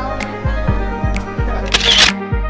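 Background music with a steady beat. Near the end there is a short camera-shutter click sound effect as the picture changes to a snapshot.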